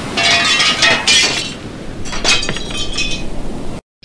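Glass-shattering sound effect: three crashes of breaking glass with tinkling shards, the first two close together in the first second and a half and a third about two and a quarter seconds in, then a sudden cut just before the end.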